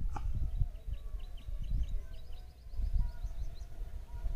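Wind rumbling on the microphone in irregular gusts, with a bird's rapid, high, chirping notes through the middle.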